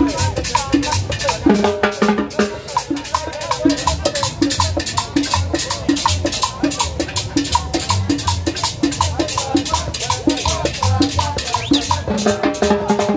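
Live street band playing Latin dance music on saxophone, trumpet, upright bass and timbales, with a steady, fast percussion rhythm.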